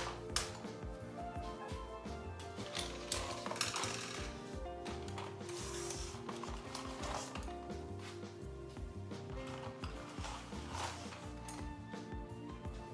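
Background music with held melody notes, over the light clatter of colored pencils rattling in paper cups as they are lifted and set down, a few sharp irregular clicks.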